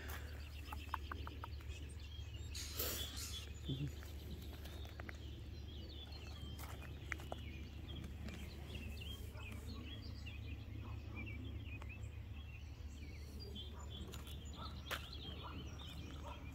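Faint early-morning outdoor ambience: birds chirping and calling here and there over a steady low hum, with a couple of brief rustles, one about three seconds in and one near the end.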